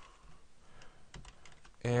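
Light typing on a computer keyboard: a handful of separate, faint key clicks.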